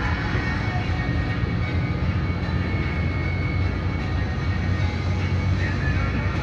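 Steady low rumble of a bus's engine and road noise heard from inside the cabin while it drives along.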